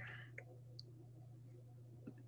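Two faint computer mouse clicks, about 0.4 seconds apart, over near silence with a low steady hum.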